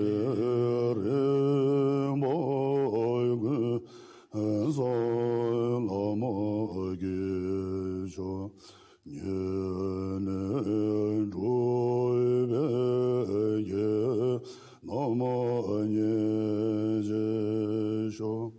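A Tibetan Buddhist monk chanting a prayer in a deep voice, mostly on one pitch, in long phrases with a short breath about every four to five seconds.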